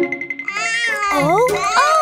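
A high, voice-like cry over children's background music, gliding up and then down in pitch twice in a row.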